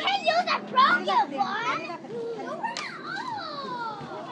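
Young children's voices chattering and calling out over one another, high-pitched and overlapping, with one child drawing out a long falling call near the end.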